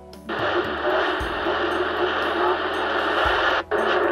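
President Harry III CB radio's loudspeaker on AM: about a third of a second in, the squelch opens on an incoming transmission and a steady rush of static fills the speaker, the S-meter rising as the signal comes in. The static drops out for a moment near the end, just before the station's voice comes through.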